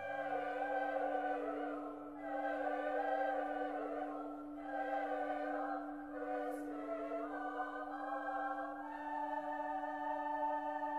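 Choral music: a choir singing long held chords that change every second or two over a steady sustained low note.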